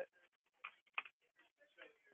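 Near silence with a few faint, separate clicks of computer keys being typed.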